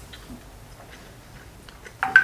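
Quiet eating: a man chewing a mouthful of pasta, with a few faint clicks.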